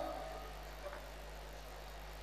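A pause in the speech, leaving only a faint, steady low hum in the background.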